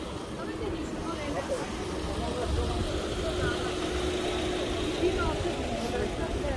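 A car engine running close by, with a steady hum and a low rumble that grows louder a couple of seconds in, under the voices of people talking as they walk past.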